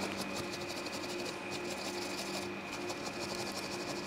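Brush bristles scrubbing dust out of an opened laptop around its dusty cooling fan, in quick repeated rubbing strokes, faint, with a steady low hum underneath.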